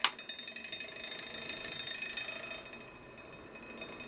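A click as the toggle switch is flipped, then a homemade stir plate's PC cooling fan running with a steady whir and a high whine. There is a fast rattling over the first second or so as it comes up to speed.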